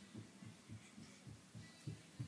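A boxy electrical device heard close up: a faint, low, uneven throbbing, about three or four pulses a second, over a steady low hum.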